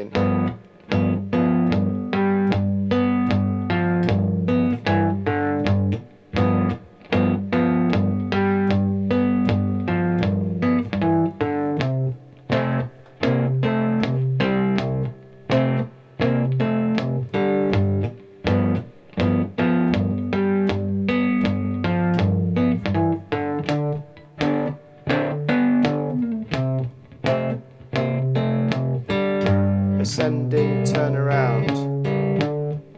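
Three-string cigar box guitar in open G (GDG) tuning played fingerstyle with a thumb pick: a 12-bar blues of fretted two-note chord shapes over a ringing low bass, a few plucked notes a second without a break.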